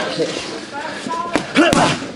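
Boxing gloves hitting focus mitts twice in quick succession, two sharp smacks about a second and a half in, with voices talking in the gym.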